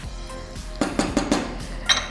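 A cooking spoon clinking and knocking against a metal pot and dishes in a quick cluster of knocks about a second in, over soft background music.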